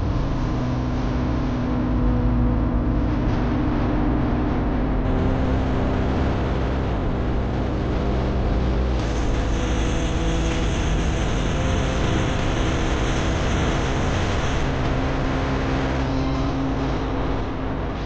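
A vehicle driving along a road: engine running under steady road noise, with a higher hiss joining for several seconds from about halfway through.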